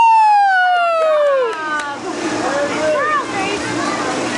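A long, high-pitched "whoo" from a person, falling slowly in pitch over about a second and a half, followed by softer voices in the background.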